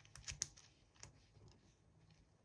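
Faint, quick clicks and crackles of pink moldable sand being squeezed and pressed between the fingers: a cluster in the first half second and another about a second in.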